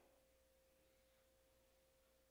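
Near silence with only a faint, steady single-pitched hum.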